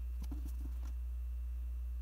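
Steady low electrical hum, with a few faint small clicks of hands handling a palm-sized USB meter in the first second.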